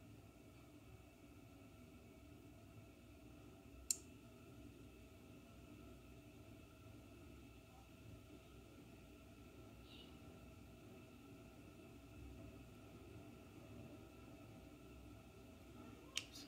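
Near silence: faint steady room tone with a low hum, broken by one sharp click about four seconds in.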